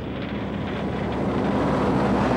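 Heavy truck and trailer approaching along a highway, its engine drone and tyre noise growing steadily louder as it nears.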